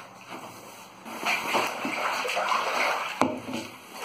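Water splashing and sloshing inside a 3,000-litre water tank, starting about a second in, with a single knock near the three-second mark.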